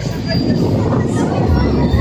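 Strong wind buffeting a phone's microphone, a loud, steady low rumble that swells about a second and a half in.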